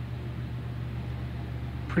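Steady low hum of room tone, with no distinct event.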